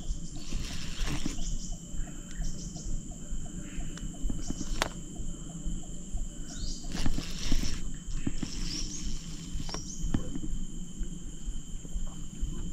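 Steady high droning of insects in riverside forest, holding two even tones, over a low outdoor rumble. A few short high chirps and scattered sharp clicks and rustles from handling the rod and reel, the sharpest click about five seconds in.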